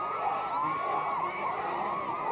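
Crowd of young spectators shouting and cheering on a tug-of-war, many high voices overlapping at once.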